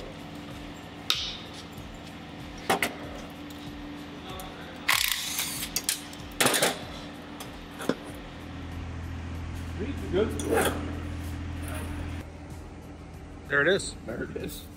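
Metal parts of a Mercury two-stroke outboard powerhead knocking and clattering as the plenum and oil-tank assembly is worked loose by hand, with a short burst of noise about five seconds in. A steady low hum joins in for a few seconds in the second half.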